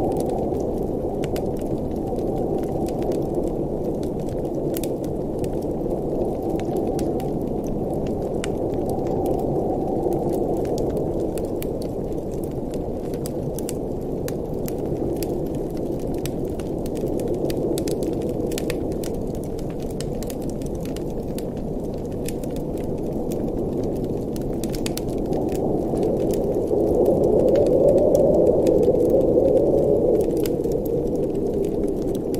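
Wood fire crackling in a fireplace, with scattered sharp pops, over a steady low blizzard wind that swells louder near the end.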